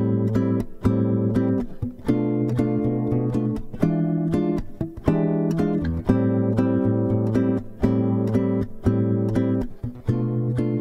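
Music: an acoustic guitar strumming chords in a steady rhythm, with no vocals, in an instrumental passage of the song.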